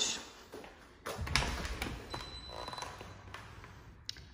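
A door's handle and latch clicking about a second in, then the door swinging open with a low rumble and a few lighter clicks.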